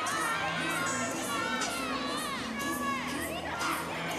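Teammates shouting and cheering encouragement to a gymnast on the beam, many high voices overlapping, their calls rising and falling.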